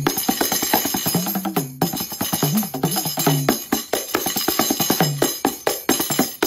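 Handheld frame drum beaten rapidly with the fingers and palm: a fast, continuous run of taps with some jingle, over a low droning tone that bends up and down in pitch.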